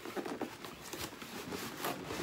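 Paper and cardboard being handled in a shoe box: light rustling with scattered small clicks and knocks.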